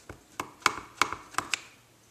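Clear acrylic stamp block tapped about five times in quick succession onto a Versamark ink pad, hard plastic taps inking the stamp.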